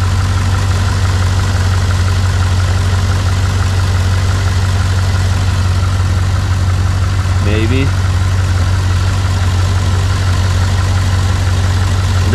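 Chevrolet Corvette V8 idling steadily with the hood open.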